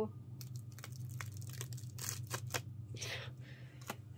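Sheer nylon stockings being handled, a run of short, irregular rustles and crackles as their sticky silicone stay-up tops are peeled apart.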